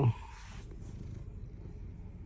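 Black domestic cat purring steadily, a low even rumble, as its head is massaged: a sign that it is content. A pitched voice trails off in the first instant.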